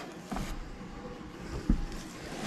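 Faint handling noise of knit sweaters being moved in a cardboard box, with one dull thump near the end, over a faint steady hum.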